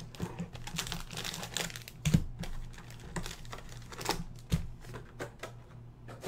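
Typing on a computer keyboard: irregular light clicks, with a few duller knocks in between.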